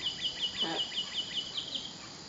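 A bird calling in a fast, regular run of short, high, down-slurred chirps, about five a second, that stops near the end.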